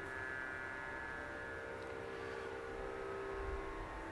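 A faint, steady drone of several held tones, with a low hum beneath.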